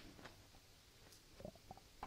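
Near silence: room tone in a pause between sentences, with a couple of faint soft sounds about one and a half seconds in.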